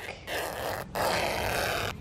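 Scissors cutting through thin fabric, a long cut, broken into two stretches by a short pause a little under a second in.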